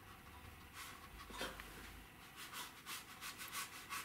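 Round watercolor brush stroking wet paint across paper, a faint rubbing, with a quick run of short strokes, about four a second, in the second half.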